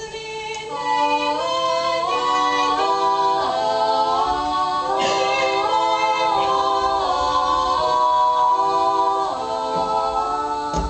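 Three female voices singing a carol a cappella in harmony, several parts moving together in held notes.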